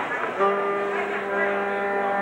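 An electronic keyboard starts one steady held note about half a second in and sustains it without change.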